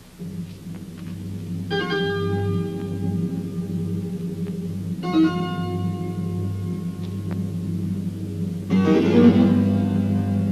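Background film music: a held low organ-like drone, with sustained chords entering about two seconds in and again about halfway, and a louder swell near the end.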